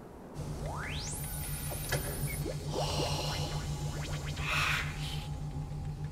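Science-fiction sound design of the TARDIS interior: a low pulsing hum starts about half a second in. A rising electronic sweep follows about a second in, with whooshing swells near three and five seconds, under music.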